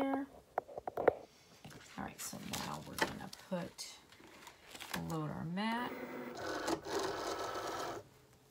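Rustling and crinkling of a gold foil vinyl sheet being handled and smoothed onto a plastic cutting mat, with scattered clicks and taps.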